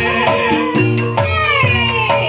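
Live gamelan music for an ebeg dance: metallophones and drum keep a steady beat under a high wavering melody line that slides down in pitch near the end.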